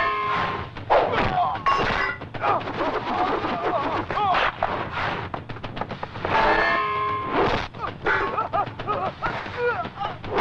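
Film fight-scene sound effects: a run of sharp punch and blow impacts, with men's voices crying out and shouting between the hits.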